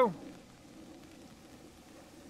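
Faint, steady hiss of rain.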